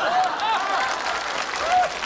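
Studio audience applauding, with a few voices rising over the clapping.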